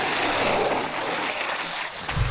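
Downhill longboard wheels running at speed on asphalt: a steady rushing noise.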